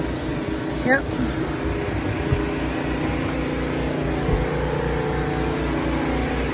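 A motor running steadily close by, a continuous mechanical hum over a low rumble.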